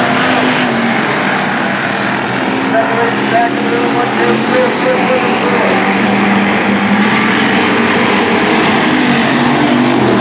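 Engines of several hobby stock race cars running at speed on a dirt oval. The pitches overlap and rise and fall as the cars accelerate and back off through the turns.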